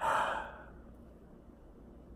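A man's short sigh: one breathy exhale of about half a second at the start, fading into quiet room tone.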